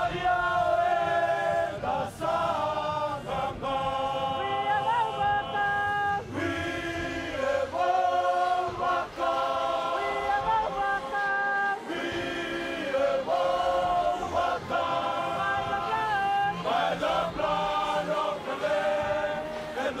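A group of Fijian rugby players singing a hymn in men's voices in close harmony, unaccompanied. It goes in phrases of long held chords with short breaks between them.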